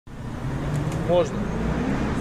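Steady low rumble of city street traffic, cars running on the road close by, with a single short spoken word a little after one second in.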